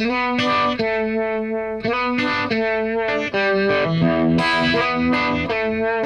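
Stratocaster-style electric guitar playing a blues-rock riff in E: a slide up from A to B at the fourth fret with a D added on top, notes and double-stops ringing into each other.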